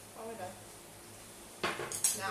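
Ceramic bowls and chopsticks clinking at a meal, with a sharp, louder knock near the end as a bowl is set down on the wooden table.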